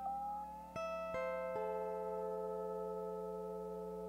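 Lap steel guitar run through a looper and audio-processing patch: a held note slides up in pitch, then three plucked notes follow about 0.4 s apart and ring on together. A steady low electrical hum sits underneath.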